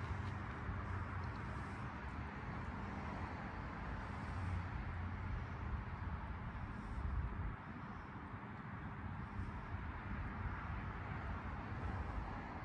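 Quiet, steady outdoor background noise: a low hum under a faint hiss, with no distinct events.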